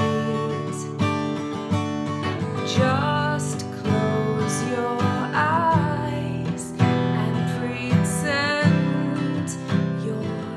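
A woman singing the first chorus of a song while strumming chords on an acoustic guitar.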